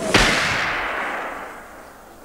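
A single gunshot just after the start, loud and sharp, with a long echoing decay that fades over about a second and a half. It is the shot that puts down the racehorse Frou-Frou after its back was broken in the fall.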